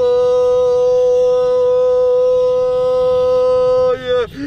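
A race commentator's voice holding one long, high, steady shouted "yaaa" at full strength for about four seconds, the pitch dropping as it breaks off at the end.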